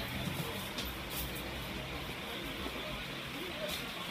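Steady background noise of a busy room with faint, indistinct voices.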